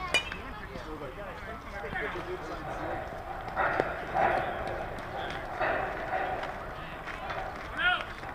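Voices of players and spectators calling out across a softball field, loudest in the middle. There is a single sharp knock just after the start and a short high call near the end.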